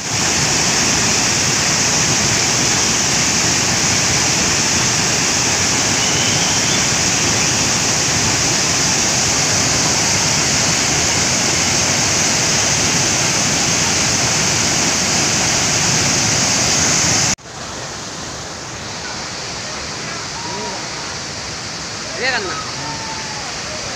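Hogenakkal Falls on the Kaveri river: heavy white water pouring over rock ledges, a loud, steady rush. About three-quarters of the way through, the rush drops off abruptly to a much quieter background of water noise.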